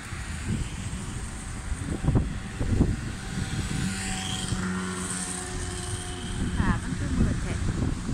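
City street traffic: a steady rumble of passing road vehicles, with an engine hum that swells in the middle. A short stretch of voice comes near the end.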